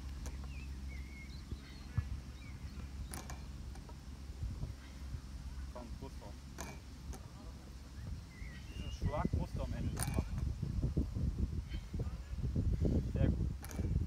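A loaded hex bar worked through repeated lifts, giving a sharp click about every three to four seconds, over a low steady rumble.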